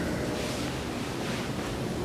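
Steady background noise of the room, an even hiss with a low rumble and no clear events.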